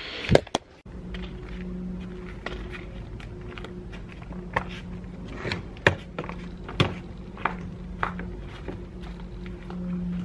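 Footsteps in flip-flops on cobblestones: irregular slaps and knocks, with a sharp click near the start, over a steady low hum.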